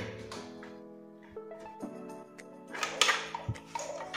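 Background music of slow, held notes, with a few short clicks and knocks in the second half from a cable and a V8 USB sound card being handled.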